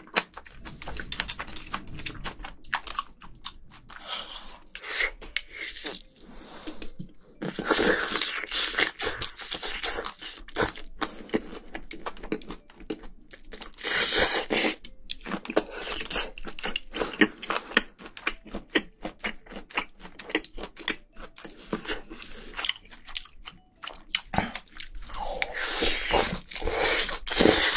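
Close-miked chewing and crunching of spicy braised seafood and bean sprouts: a steady run of wet mouth clicks and crunches, with longer, louder bursts about eight and fourteen seconds in.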